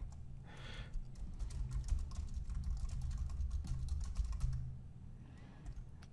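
Typing on a computer keyboard: a quick run of keystrokes entering a short commit message. It starts about a second in and stops about a second before the end, over a faint steady low hum.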